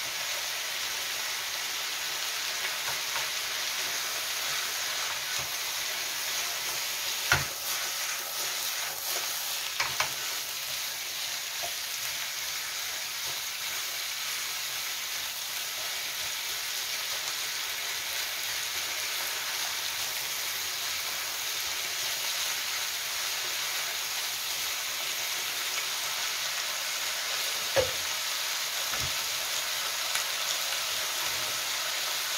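Diced meat and vegetables (potato, carrot, onion, zucchini) sizzling steadily in a wok as they are stir-fried together, with a few sharp knocks of the spatula against the pan.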